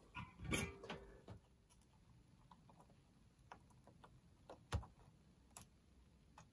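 Faint, scattered small clicks and taps from handling the opened boombox and tools: a few in the first second, then single ones spread out, the clearest a little before the end.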